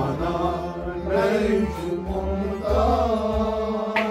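Kashmiri Sufi kalam: a male voice sings a slow, chant-like melody with gliding held notes over a harmonium accompaniment.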